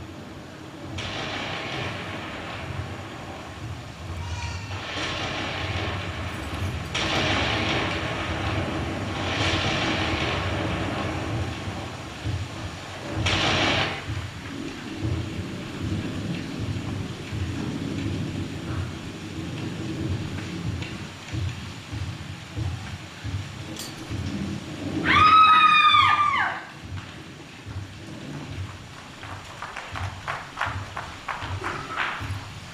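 Recorded thunder played as a stage sound effect: a low rumble with several rolling peals during the first half. Near the end comes a loud horse whinny, followed by the first hoofbeats.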